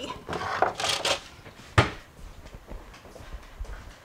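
Rummaging in a lower kitchen cabinet and pulling out a large plastic cutting board: a second of scraping and rustling, then one sharp knock a little under two seconds in, then lighter handling sounds.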